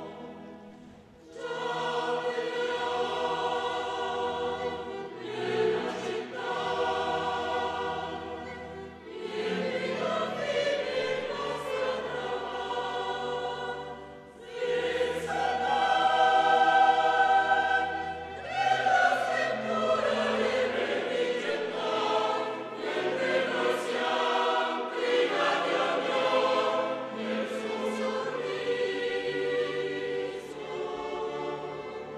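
Mixed choir singing with a chamber orchestra of strings, in sustained phrases broken by short pauses about one, nine and fourteen seconds in.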